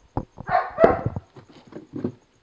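A dog barking: several short barks in quick succession in the first second or so, then weaker ones near the end.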